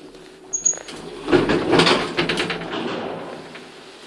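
A short high electronic beep about half a second in. Then a modernised KONE elevator's automatic car doors slide open, a loud rush of noise with a run of rattling clicks that fades out over about two seconds.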